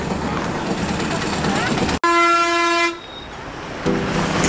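Street traffic noise, then after a sudden cut a vehicle horn sounds one steady note for about a second and fades out.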